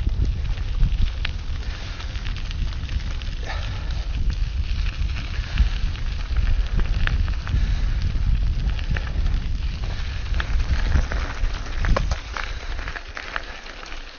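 Enduro mountain bike rolling down a gravel track: tyres crunching and crackling over loose stones, with frequent sharp clicks and rattles from the bike, under heavy wind rumble on the microphone. The wind rumble drops away about twelve seconds in as the bike slows.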